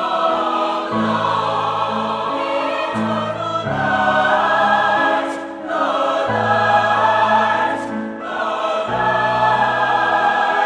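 Concert choir singing a slow choral piece with piano accompaniment, held low notes entering under the voices; the sound dips briefly twice, about five and a half and eight seconds in, between phrases.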